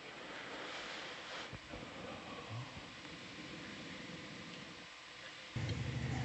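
Faint steady hiss of background noise, with a low hum that comes in suddenly near the end.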